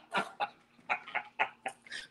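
A man laughing hard in short, breathy bursts, a few a second, with a brief pause a little before halfway.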